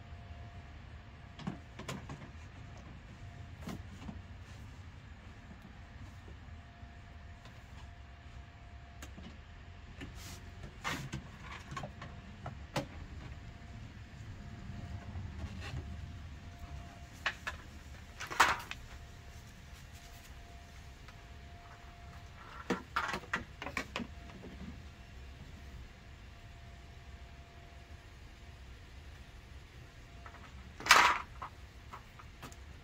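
Scattered light knocks and clicks from hands working at a car's underside and rocker panel, the loudest about eighteen seconds in and a small cluster a few seconds later, over a low steady outdoor rumble.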